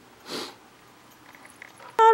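A single short sniff through the nose, about a third of a second in.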